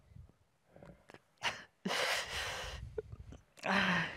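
A man's heavy sigh into a close microphone: a short breath about a second and a half in, then a sudden loud breath out that trails off, and another breath with a slight groan near the end.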